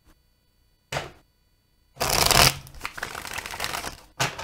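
A deck of tarot cards shuffled by hand. A short shuffle comes about a second in, then a louder burst at two seconds, followed by about two seconds of steady rustling as the cards slide together.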